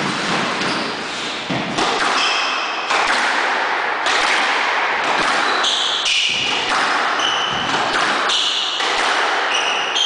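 Squash rally: the ball knocking hard off rackets and the court walls about once a second. Between the hits come short high squeaks of court shoes on the wooden floor.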